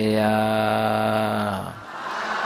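A man's voice chanting a Buddhist recitation, holding one long, steady low note that fades out near the end.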